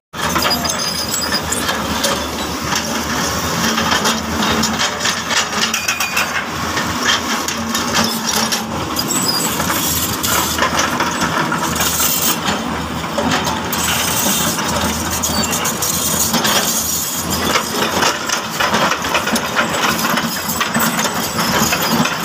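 Diesel engines of crawler excavators running steadily, overlaid by many irregular hard clinks and clatters of rock against rock and steel as the buckets handle boulders.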